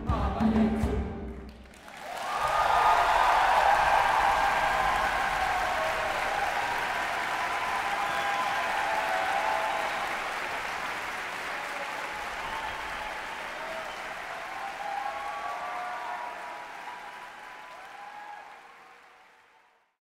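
A choir's final notes with drum beats end about two seconds in, and a large audience breaks into applause with cheering, which fades out near the end.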